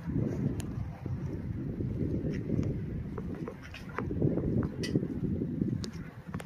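Wind buffeting the microphone outdoors: an uneven low rumble, with a few faint clicks.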